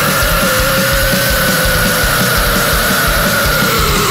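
Death metal music: one long held note that slides down slightly near the end, over fast, dense drumming.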